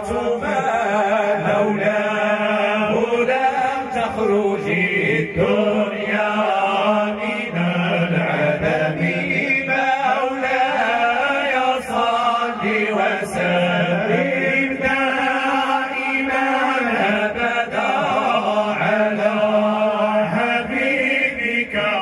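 A group of men chanting devotional praise poetry together into microphones, voices only, in long held, drawn-out notes that slide from pitch to pitch.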